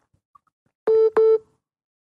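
Two short electronic beeps on a telephone call line, back to back about a second in, each a single steady tone.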